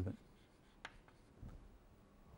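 Chalk writing on a blackboard, faint, with one sharp tap of the chalk a little under a second in and a softer scrape about halfway through.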